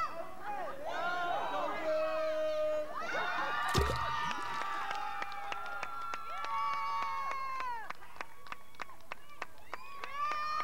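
Children shouting and cheering at a pool, with one loud splash about four seconds in as a diver drops from the high board into the water, followed by smaller splashing.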